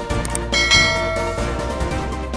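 Background music with two small clicks early on, then a bright bell-like chime about half a second in that rings for about a second and fades. These are the sound effects of a subscribe-button and notification-bell animation.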